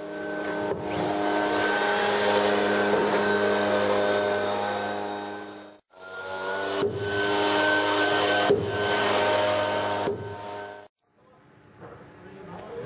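A motor running steadily at one pitch, cut off abruptly about halfway through and picking up again a moment later with a few knocks, then stopping shortly before the end.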